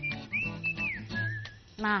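Light background music carrying a whistled melody: a high whistle slides up, holds briefly and falls away, followed by a shorter, wavering whistled note. A soft, steady low accompaniment runs underneath.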